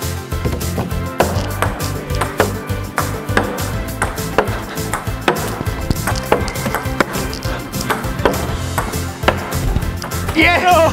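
A ping pong ball rallied with plastic snow sledges as paddles: a fast run of sharp clicks and knocks, two or three a second, as the ball bounces on the table and comes off the sledges. Background music with a steady beat plays under it.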